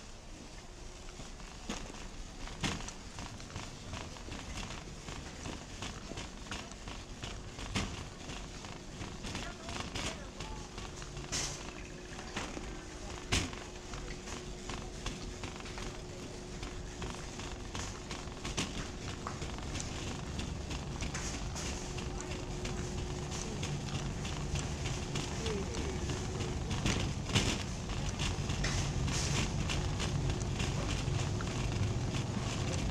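Metal shopping cart rolling over a hard store floor, rattling with scattered clicks and knocks, with a low rumble that grows louder over the last third. Indistinct voices and a faint steady hum run underneath.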